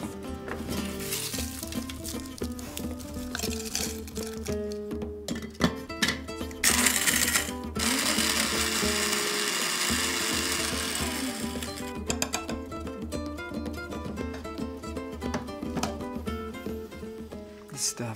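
Electric blade spice grinder running for about five seconds in the middle, pulverizing toasted dried chilies into chili powder, over background music.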